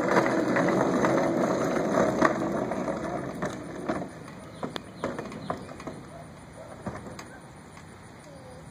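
Hard plastic wheels of a toy car rumbling over a concrete driveway as it is pushed, fading over the first four seconds. After that come scattered light plastic clicks and knocks as the car is set on a plastic roller-coaster slide.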